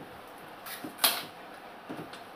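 Claw hammer prying wooden slats off a packing crate: a few short, sharp knocks of wood and metal, the loudest about a second in.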